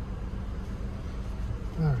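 Steady low rumble inside the cabin of a 2022 Infiniti QX50 standing at a red light, its four-cylinder turbocharged engine idling. A man's voice starts right at the end.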